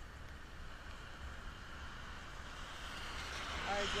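Passing vehicles' tyres hissing on a rain-soaked road, the hiss building near the end as a pickup truck comes close.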